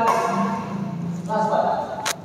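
A man's voice speaking indistinctly, with one sound held for about a second in the middle; no shuttlecock strikes.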